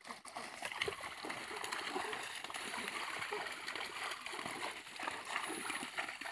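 Shallow river water splashing as people and cattle wade through it, with voices in the background.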